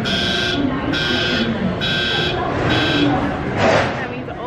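Baggage carousel warning buzzer sounding in repeated short beeps, about one a second, as the belt starts and the luggage begins to arrive. Voices carry on underneath. The beeping stops about three seconds in, followed by a brief rushing noise.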